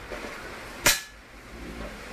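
A single sharp click about a second in, over a low steady rumble.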